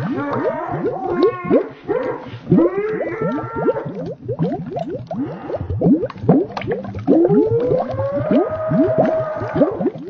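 A voice slowed far down and warped by a watery effect into long, low, moaning tones, over a constant stream of short falling chirps. The longest moan rises about seven seconds in and holds until near the end.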